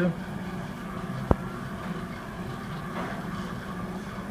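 Steady low background hum with a single sharp click about a second in.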